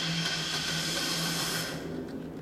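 A steady hiss over a low steady hum that cuts off sharply near the end.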